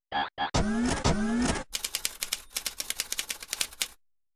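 Sound effects for a logo animation: a few quick blips, two short rising engine-like sweeps, then rapid typewriter-like clicking, about ten clicks a second, that stops abruptly just before the end.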